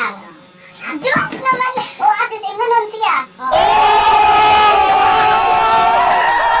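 Several young people's voices talking and laughing. About three and a half seconds in, a loud burst of music with singing cuts in abruptly and carries on.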